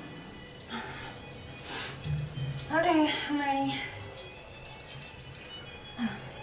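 Soft background film music with a low sustained note, under quiet breathing and one short wordless vocal sound, rising then falling, about three seconds in.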